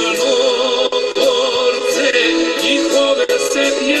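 Folk song: a male voice singing with vibrato over accordion accompaniment.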